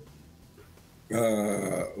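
A man's drawn-out hesitation sound, a held "éé" at one steady pitch, starting about a second in after a short silence, heard through a video-call connection.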